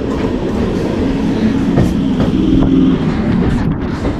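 Suburban electric multiple-unit (EMU) local train running into a platform: a steady rumble with a low motor hum and a few wheel clicks over the rail joints.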